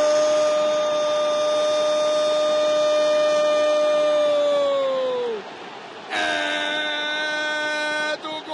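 Brazilian football commentator's long drawn-out "Gooool!" goal call, held on one steady note for about five seconds and dropping off at the end, then a second held call starting about six seconds in, over stadium crowd noise.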